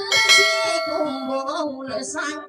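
Live plucked string music from an acoustic guitar and a small long-necked lute. A bright chord is struck just after the start and rings out for over a second, with a wavering melody line and a steady strummed pulse under it.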